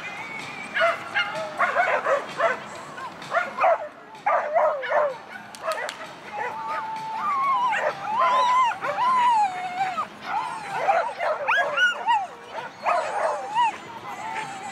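A dog barking repeatedly in short, high yips, with calls coming on and off throughout.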